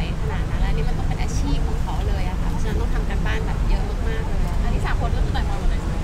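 Several voices talking over one another in a crowd, over a steady low rumble.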